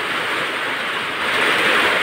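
Heavy typhoon rain pouring down, a loud, steady rushing hiss.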